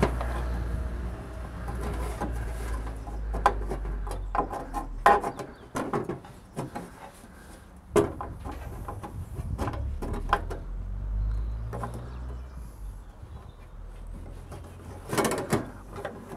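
Irregular knocks and clicks of a brake bias adjuster and its metal mounting plate being worked into a car's dashboard framework, over a low steady rumble.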